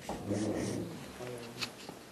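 A man's voice, low and soft, without clear words, in two short stretches, with a small click near the end.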